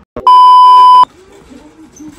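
A single loud, steady electronic beep lasting about three-quarters of a second, starting and stopping abruptly.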